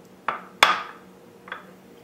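Small glass bowl set down on a granite countertop: a sharp knock about half a second in, just after a softer one, with a faint clink of glass about a second later.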